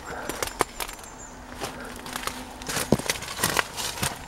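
Footsteps crunching through dry fallen leaves and dead twigs, with irregular crackles and snaps of small branches underfoot; one sharp snap near the end of the third second is the loudest.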